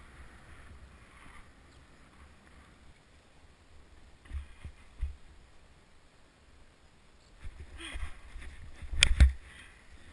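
Snowboard sliding and scraping over snow with wind rumbling on the microphone, broken by a couple of low thumps midway and a louder stretch of scraping that ends in a sharp, hard knock about nine seconds in.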